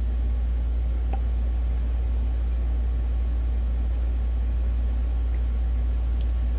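A steady low rumble with no change in level, and one faint click about a second in.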